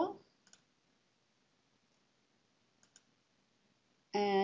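Computer mouse clicking: a faint click about half a second in and a quick double click just before three seconds, with near silence between.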